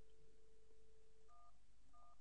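Faint dial tone on a Cisco IP softphone, cut off by the first keypress just past halfway. Two short DTMF key tones for the digit 1 follow, about half a second apart: the start of dialling extension 113.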